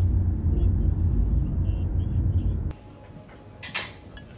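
Steady low road rumble heard inside the cabin of a moving car, cutting off abruptly near the end to a quieter room with a brief clatter.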